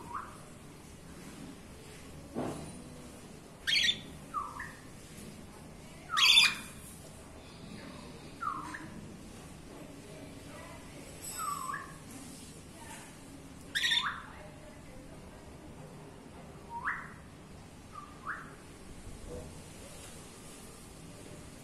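Lutino cockatiels calling: a string of short, sharp chirps and squawks, about nine of them spread unevenly over twenty seconds, the loudest about six seconds in.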